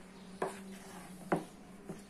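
Hand kneading sticky bread dough in a plastic bowl: three short knocks as the fist works the dough against the bowl, the loudest about halfway through. A steady low hum runs underneath.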